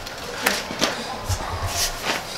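A few short scuffs and knocks of someone climbing a steep, narrow concrete stairway, with a low rumble of handling noise in the second half.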